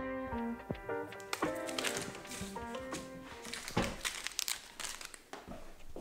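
A short tune of plucked notes winding down over the first three seconds, while the crinkling of foil baseball card pack wrappers being handled comes in and takes over, with a few louder crackles near the end.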